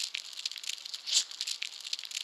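Irregular dry crackling and rattling clicks, with a louder burst about a second in.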